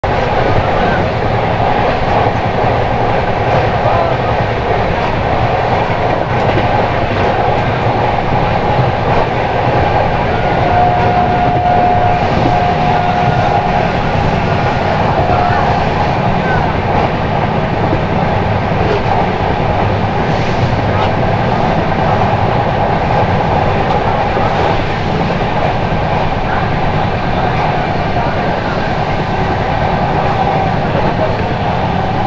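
Indian Railways passenger express running at speed, heard from an open coach doorway: a steady, loud rumble of wheels on rail. A thin steady tone rises above it for about three seconds, a third of the way through.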